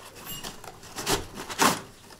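Cardboard packaging scraping and rustling as a tripod in a black fabric carry bag is slid out of its long box, with two louder scrapes in the second second.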